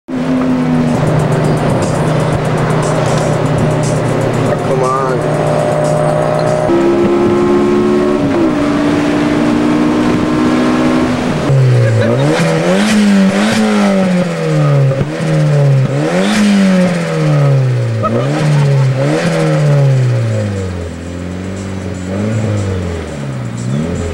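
Turbocharged late-1980s Nissan Sentra engine revved hard again and again while the car stands still. Each rev climbs and drops back about every second and a half, from about halfway through. Before that comes a steady drone that steps up in pitch about a third of the way in.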